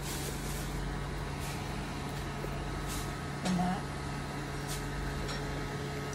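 Hands handling a leather tote bag, with scattered faint light clicks and rustles from the leather and its metal zipper pocket, over a steady low background hum. A brief murmur of a voice comes about halfway through.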